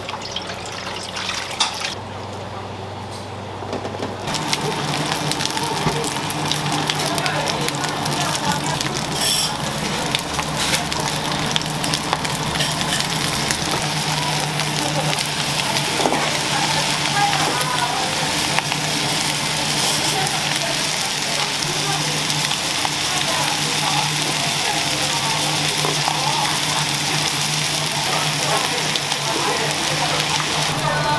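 Steady sizzling of roast chicken and scorched rice on a hot stone plate over a gas burner, settling in about four seconds in, with a steady low hum underneath.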